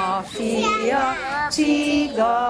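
Small children and women singing a children's song together, a simple melody in held notes with short breaks between phrases.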